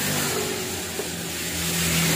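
An engine running steadily. It makes a low hum that steps up slightly in pitch about halfway through.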